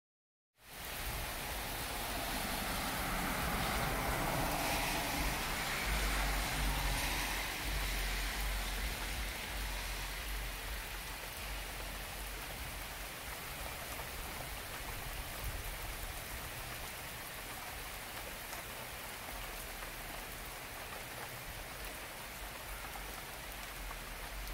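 Steady rain falling on a concrete sidewalk, starting about half a second in, with a low rumble coming and going underneath.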